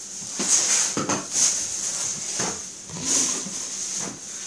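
Grocery packaging being handled and set down: crinkling plastic and cardboard boxes knocking, in several short bursts.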